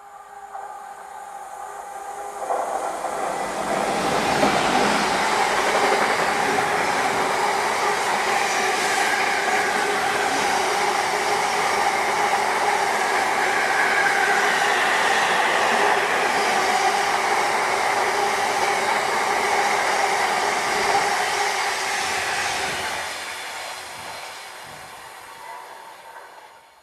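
Class 66 diesel freight locomotive, with its two-stroke V12 engine, approaching and passing at speed with a long train of empty container flat wagons. The sound builds over the first few seconds, holds as a loud, steady run of wheels on rails while the wagons go by, and fades away over the last few seconds.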